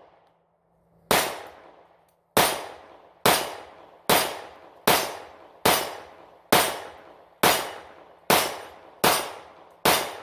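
Springfield Hellcat 9mm pistol firing steel-case ammunition in slow rapid fire: eleven shots at a steady pace of about one a second, each sharp report trailing off in an echo among the trees.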